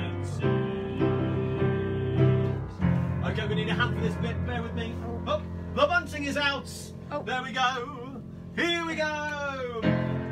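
Upright piano playing chords, breaking off about three seconds in. After that comes a man's voice making wordless sounds, ending with a long falling one near the end.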